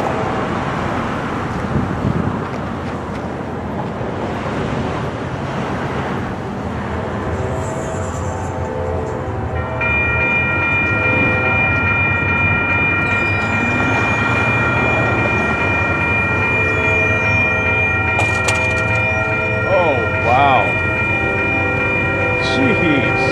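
Railroad grade-crossing warning bell starting up about ten seconds in and ringing steadily as the signals activate for an approaching train, over the rumble of passing road traffic.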